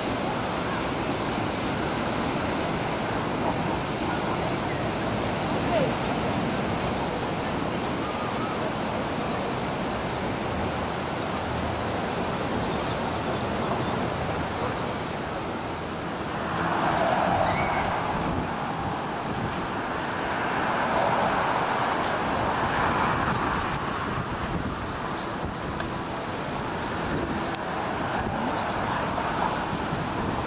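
Steady rush of surf breaking on a beach, with a murmur of beachgoers' voices. From about halfway through, road traffic takes over and cars go by twice a few seconds apart.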